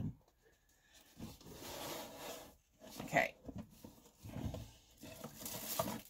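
Faint rustling and handling of an opened cardboard shipping box and its plastic-wrapped contents, with scattered soft knocks and crinkling of plastic wrap building up near the end.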